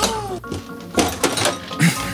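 Background music with a few sharp clicks and knocks of kitchen things being handled.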